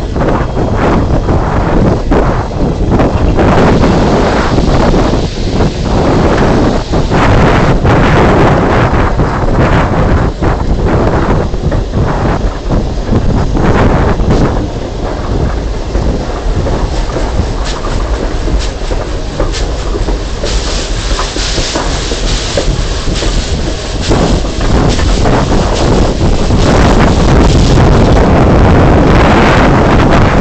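Strasburg Rail Road train running along, loud and steady, heavily buffeted by wind on the microphone. A hiss lasting about three seconds comes in past the middle.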